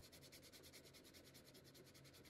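Faint hand sanding of a bare wooden guitar neck and body with a sheet of 120-grit sandpaper: a quick, even run of short rubbing strokes.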